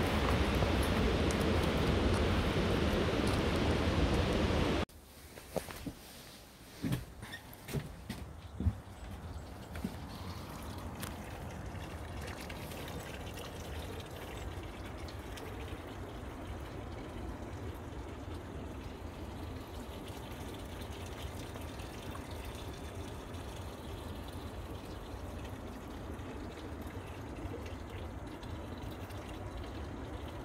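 Steady rush of flowing water, loud for about five seconds, then cut off suddenly. A fainter, steady water-like rush follows, with a few knocks just after the drop.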